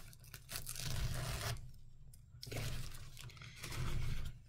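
Two-ply paper napkin being peeled apart into its layers and handled, the thin paper rustling and crinkling in two spells of about a second each.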